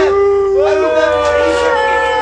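Several voices letting out long, drawn-out howling cries, overlapping at different pitches, each held for about a second before trailing downward.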